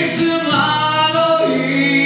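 A male voice sings a Slovenian folk song live to his own acoustic guitar accompaniment, the sung line sliding between held notes over the guitar's sustained chords.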